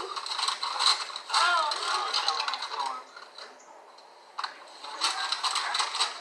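Raw cornstarch being chewed: a run of crisp clicking crunches, with a quieter lull in the middle and more crunching near the end. A brief voice is heard a little over a second in.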